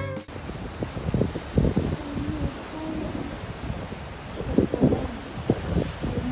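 Wind buffeting the microphone in uneven gusts with a low rumble, over the wash of sea waves breaking on a rocky shore.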